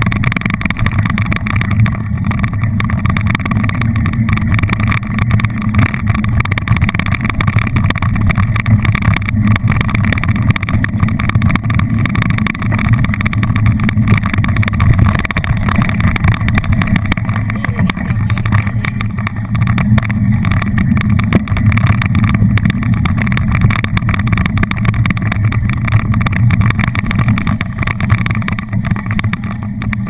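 Mountain bike rolling over a muddy dirt trail, heard through a handlebar-mounted action camera: a loud, steady low rumble of tyre, frame vibration and wind, with a constant fine rattle.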